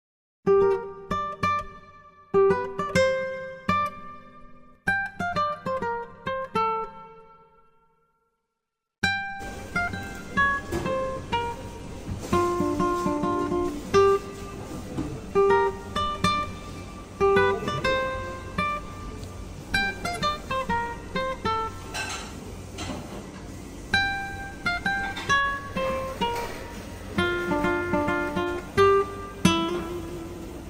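Acoustic guitar background music: a few chords struck and left to ring out, a short pause about eight seconds in, then a continuous plucked melody.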